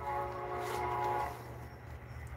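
A horn sounding one long, steady blast of about a second and a half; a second blast begins just after.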